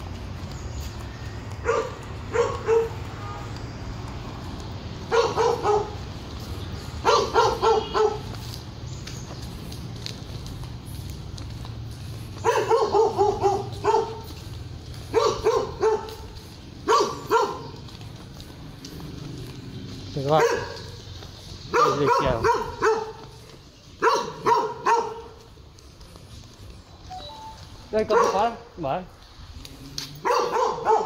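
A dog barking repeatedly, in short clusters of two or three barks every few seconds, over a low steady rumble.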